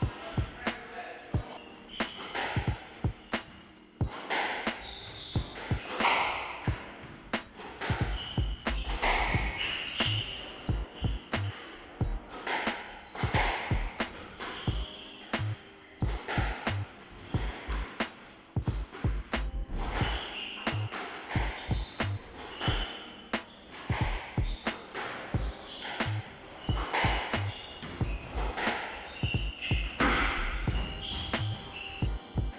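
Squash rally: a string of sharp, irregular cracks as the ball hits rackets and the court walls, with short high squeaks from players' shoes on the wooden court floor.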